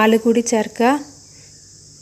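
A woman's voice speaking for about a second, then stopping. Under it runs a steady high-pitched hiss that goes on after she stops.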